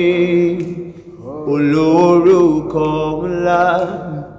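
A man singing a slow worship chorus alone, drawing out the words on long held notes. A held note fades out about a second in, and after a short break a longer phrase follows, its pitch sliding up and down.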